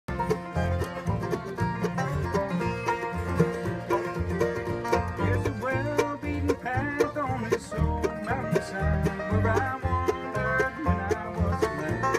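An acoustic bluegrass band plays an instrumental passage: a five-string banjo, fiddles, a strummed acoustic guitar and an upright bass keeping a steady beat. Sliding fiddle notes come in about halfway through.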